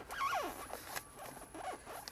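A zippered black bag being handled as a hand rummages inside it: rustling and scraping with short squeaky falling glides, loudest just after the start and again, fainter, near the end.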